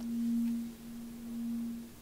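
A single low, pure sustained tone from the episode's score, swelling twice.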